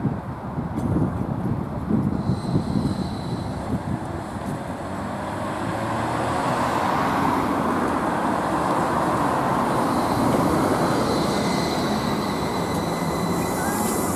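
Trolleybus approaching and drawing up at a stop amid passing road traffic, with a thin high whine heard briefly about two seconds in. The noise grows louder and steadier from about six seconds in as the trolleybus comes close.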